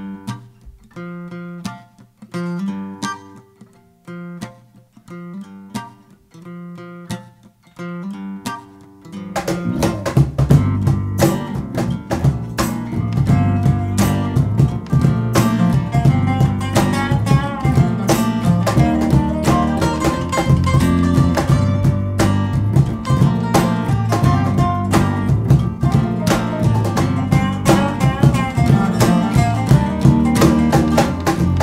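Instrumental intro of an acoustic band song. For about nine seconds a guitar picks sparse single notes, then the full band comes in together: resonator guitar, acoustic guitar and cajón playing a steady groove over a low bass line.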